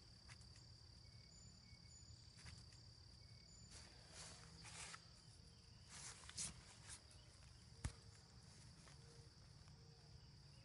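Near silence: a faint, steady, high-pitched insect drone, with a few faint rustles and scrapes as a knife works the deer's hide and a single click near the eight-second mark.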